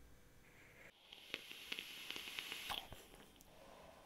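Faint hiss of air drawn through a vape's rebuildable atomiser as the fused Clapton coil fires at 50 watts, with light crackling from the coil. It lasts about two seconds, starting about a second in.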